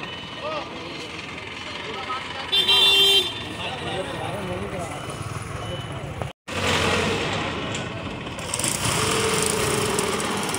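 Forklift engine running while it lifts a wooden vendor's cart onto a truck, amid street traffic. A short, loud vehicle horn honk sounds about two and a half seconds in.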